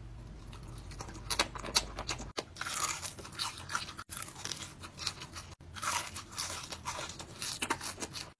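Close-miked eating: blackberries being bitten and chewed, then a run of crunchy bites and chewing with many sharp crackles. The audio is spliced into short segments that cut off abruptly several times.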